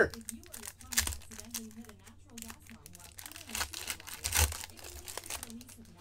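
Crinkling and crackling of a foil trading-card pack wrapper as the pack is opened and its cards are handled, with louder crackles about a second in and again near four and a half seconds.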